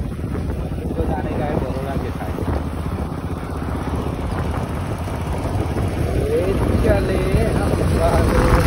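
Motorcycle ride: wind rushing over the microphone together with the bike's engine and road noise. A voice with gliding, wavering pitch is heard over it in two spells, near the start and again after about six seconds.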